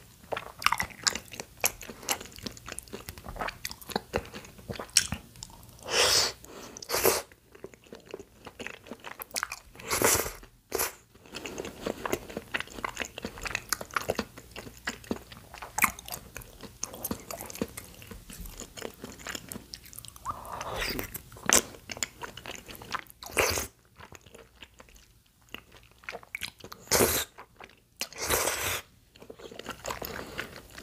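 A person eating close to the microphone: chewing and biting food, with a steady run of short crunches and mouth clicks and a few louder, longer bites.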